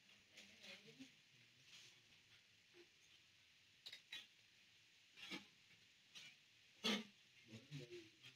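Near silence: quiet room tone, with a few faint short clicks and soft noises.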